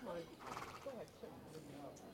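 A horse gives a short vocal snort or nicker about half a second in, heard over low murmured voices.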